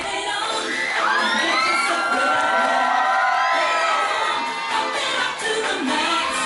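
Audience cheering and screaming, with high shrieks rising and falling, while the dance music carries on with its bass dropped out.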